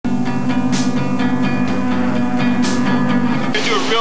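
Accordion playing a held, droning chord that breaks off about three and a half seconds in, a false start, as a man's voice begins speaking.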